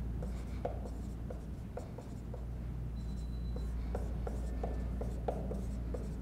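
Dry-erase marker writing on a whiteboard: a run of short taps and strokes from the tip, with a couple of brief squeaks, over a steady low room hum.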